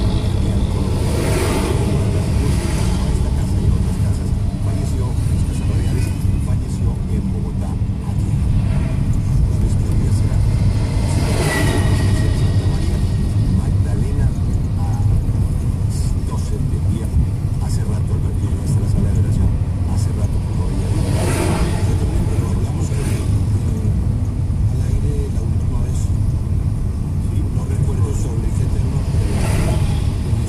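Steady low engine and road rumble of a car heard from inside its cabin while driving, with louder swells about a second, eleven and twenty-one seconds in. A brief high tone sounds about twelve seconds in.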